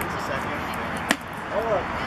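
A single sharp pop of a pitched baseball smacking into the catcher's leather mitt about a second in, over steady spectator chatter, followed by a brief voice call.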